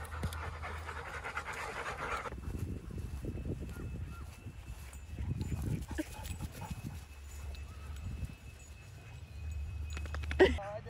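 A Weimaraner panting hard close by, stopping abruptly about two seconds in. After that a low steady rumble with faint scuffs.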